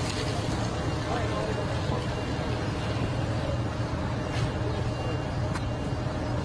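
Steady low rumble of vehicle engines running, with faint voices in the background.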